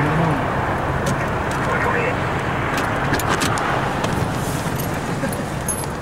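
Steady background noise of idling and passing vehicles, with faint voices and a few sharp clicks, the first about a second in and more around the middle.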